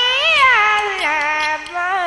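Vietnamese xẩm folk music: a single bending melodic line that swoops up and back down about a third of a second in, then settles on a lower held note.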